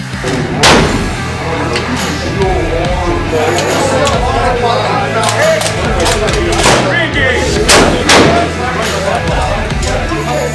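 Rifle shots over background music: one sharp report under a second in and another near eight seconds in, each followed by a ringing tail.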